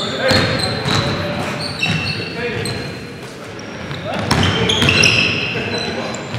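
Basketball game sounds on a gym's hardwood court: repeated short, high-pitched sneaker squeaks and a basketball bouncing, with players calling out.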